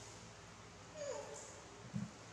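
A young macaque gives one short, high call about a second in, falling slightly in pitch, with a brief dull thump right at the end.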